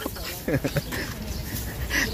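Background voices at a busy outdoor market, with a short voiced sound about half a second in.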